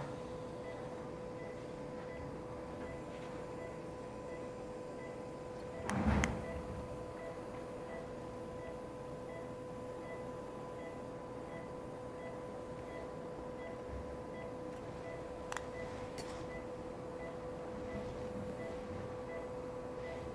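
Steady electrical hum with a faint, quick regular pipping above it, typical of operating-room equipment. A single thump comes about six seconds in, and a couple of light clicks of handled instruments near the end.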